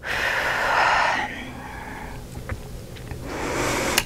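A woman breathing deeply and audibly: a long breath out over the first second or so, then a quieter breath building again near the end.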